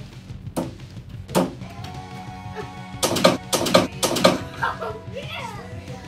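Knocks of a small ball against a mini basketball hoop hung on a door. There are two single knocks in the first second and a half, then a quick run of four loud knocks about three seconds in.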